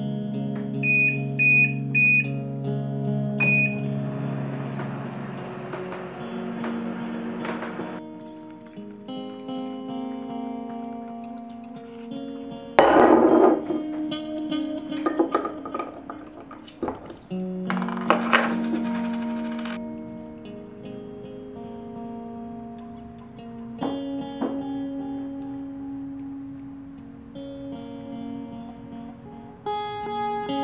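Guitar music throughout, with four short high beeps from a microwave keypad in the first few seconds. Two loud rushing noise bursts come about midway.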